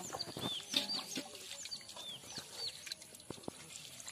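Birds chirping: a run of short, high, falling chirps, thickest in the first three seconds, with a couple of soft ticks later on.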